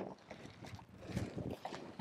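Faint rustling and handling noise of a rubber-backed Nylatex Velcro strap being unrolled and wrapped around a Pilates ring, with a light click at the start.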